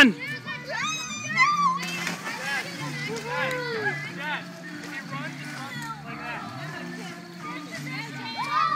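Several people's voices calling and chatting at a distance, with a low hum underneath.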